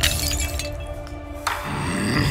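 Cartoon sound effect of a glass shattering as a drink is spilled, with a sharp crash at the start and a hiss of noise near the end, over background music.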